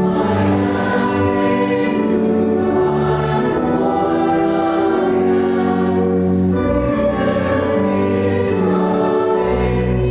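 A congregation singing a hymn in slow, held notes, accompanied by a pipe or electronic organ whose deep bass notes sound beneath the voices.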